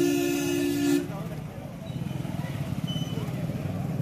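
A vehicle horn sounds once, a steady two-note honk lasting about a second. After it comes the low, even rumble of motorcycle and car engines in street traffic.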